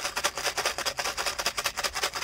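A rapid, even pulsing buzz, about eighteen pulses a second, standing in for a ship's motor.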